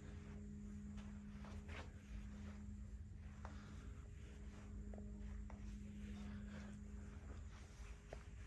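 Quiet room tone: a steady low hum, with a few faint soft taps of footsteps on carpet.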